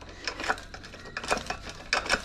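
A few light, irregular metallic clicks and clinks as the steel pump handle of a hydraulic bottle-jack shop press is handled and refitted.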